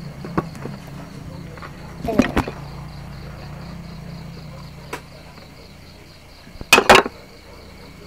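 Bamboo tubes and a tray knocking on a wooden table as they are handled: a few light knocks about two seconds in and a louder double knock near the end as the tray is set down, over a low steady hum.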